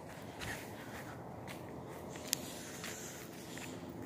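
Quiet footsteps on garden soil over a low steady background hiss, with one sharp click a little past halfway.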